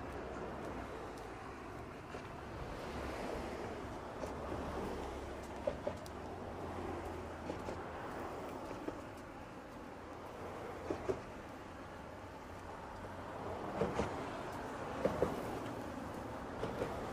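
Steady road traffic noise of cars passing close by on a bridge deck, with a few short clicks.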